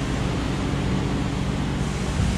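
Steady low mechanical hum with a faint even hiss, unchanging throughout.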